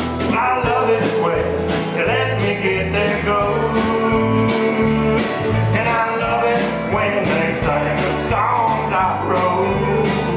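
Live country band playing an instrumental stretch of an upbeat song: a drum kit keeping a steady beat under bass guitar, acoustic and electric guitars and a pedal steel guitar.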